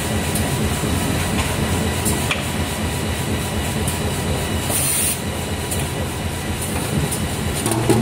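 HSYX-450X2 automatic bag-on-roll making machine running, a steady mechanical din with scattered clicks from its working mechanism. There is a short hiss about five seconds in.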